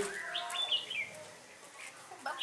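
Red-whiskered bulbuls calling: a few short whistled chirps and warbled notes in the first second, then trailing off faintly.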